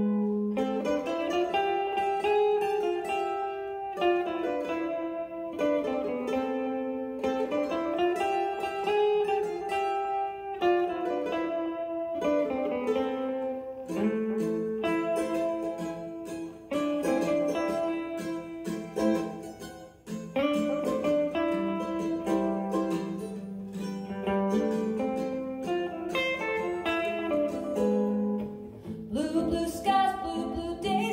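Mandolin and archtop guitar playing an instrumental passage together: a plucked melody over guitar accompaniment.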